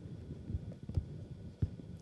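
Faint, soft taps of a stylus writing on a tablet: a few short low thumps about half a second apart over quiet room hum.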